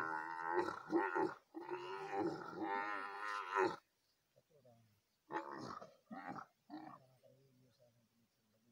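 Dromedary camel calling: a long, loud call in three drawn-out pulls over the first four seconds, then three shorter calls a little after the middle.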